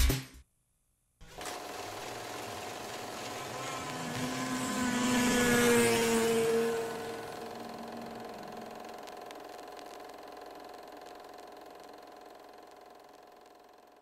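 Outro sound effect: a steady drone with a faint rising whine that swells to its loudest about six seconds in, then slowly fades out. It starts after about a second of silence.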